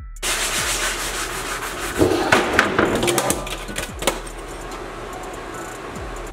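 Sanding sponges rubbed back and forth by hand over a plywood tabletop: a steady scratchy sanding noise, with harder, louder strokes about two to three seconds in, then easing off to a softer rub.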